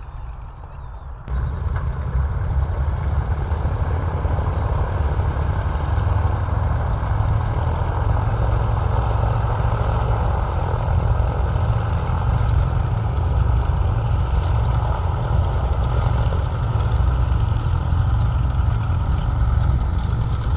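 Wright R-2600 radial engines of a B-25 Mitchell bomber running at low power as it taxis close by: a steady, deep, rumbling drone. The sound jumps much louder about a second in.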